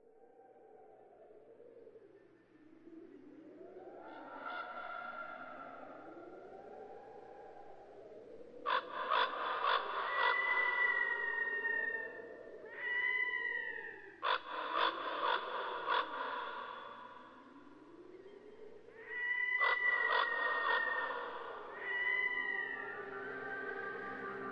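Whale calls: slow wavering moans rising and falling in pitch, broken by three bursts of rapid pulsed calls, each carrying a high whistle that slides downward. Soft music comes in near the end.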